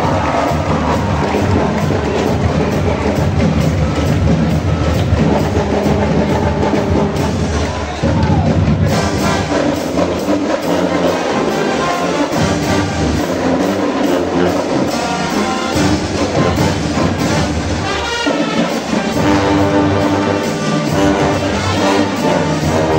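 A Brazilian marching band (banda marcial) playing a brass piece, with sousaphones, trombones and trumpets over drums. There is a brief break about eight seconds in before the band plays on.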